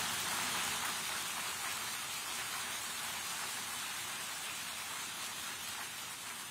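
Audience applauding, a steady clapping that slowly fades.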